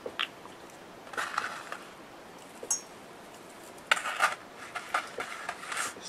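Small craft items handled on a table: a plastic glue bottle set down and a metal ball chain picked up, giving light clicks and clinks. There is a brief rustle about a second in, and the sharpest clicks come about four seconds in.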